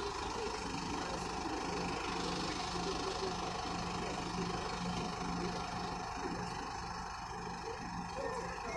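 An engine idling, a steady low hum.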